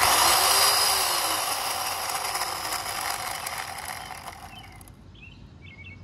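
Worx WG305 14-inch 8-amp corded electric chainsaw running free in the air, not cutting, to show how much noise it makes. It starts suddenly at full speed, then fades and stops about five seconds in.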